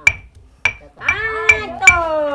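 Stone pestle striking a stone mortar as green leaves are pounded: four sharp, ringing clinks about half a second apart. A person's voice joins about halfway through.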